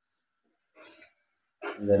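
Near silence, broken by a brief faint sound about a second in, then a man starts speaking near the end.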